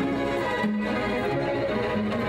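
A string quartet playing, with several bowed notes held together and the parts moving to new notes every second or so.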